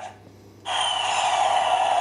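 Talking Superman action figure playing a sound effect through its small built-in speaker: a steady hiss with a faint falling tone over it. It starts about half a second in, lasts a little under two seconds and cuts off suddenly.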